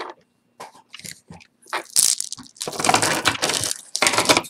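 A few light clinks of a gold chain necklace with acrylic teardrop pieces being lifted off a velvet display, then, about two seconds in, loud crackling and crinkling of clear plastic packaging being handled.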